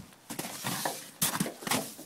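Soft rustling with two short knocks about half a second apart, past the middle.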